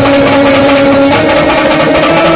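Live folk dance music played loud, its melody holding a long note that moves to new notes about a second in.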